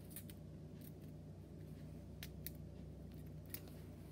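A few faint, crisp ticks and taps from a toothpick and fingers working on a paper coffee filter laid over crinkled tin foil, over a steady low hum.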